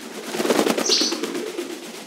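African grey parrot beating its wings rapidly while gripping its perch, a fast flutter of wingbeats that swells in the first second and eases off over the next. A short high chirp sounds over the flapping about a second in.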